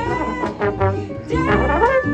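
Slide trombone playing a melodic line over a bass accompaniment, with notes bent by the slide and a rising glide about three-quarters of the way through.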